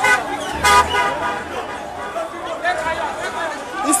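A car horn sounds once, briefly, about half a second in, over the steady hubbub of a crowd and scattered shouting voices.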